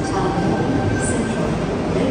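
Tangara double-deck electric train rolling past along an underground station platform: a steady rumble of wheels and running gear.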